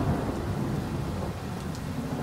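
Steady rain with a low rumble of thunder that slowly dies away.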